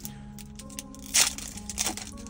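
Foil booster-pack wrapper being torn open and crinkled, with a sharp rip about a second in and another near the end.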